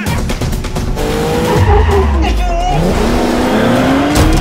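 A car's engine revving with a rising pitch and tyres squealing, under dramatic trailer music.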